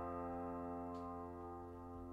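Quiet piano chord ringing out and slowly dying away, the end of a hymn accompaniment, with one faint click about a second in.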